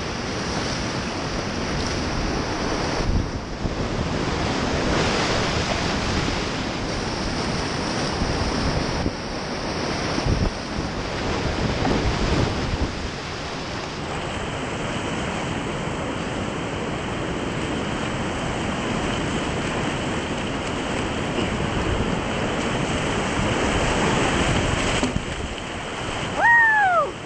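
Whitewater rapids rushing around a kayak, heard close up through a point-of-view camera's microphone and mixed with wind noise on the mic, with a few louder surges. About halfway through the sound changes, losing its upper hiss.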